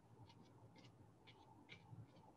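Near silence, with a few faint, short scratches of a flat paintbrush dabbing acrylic paint onto the painting surface.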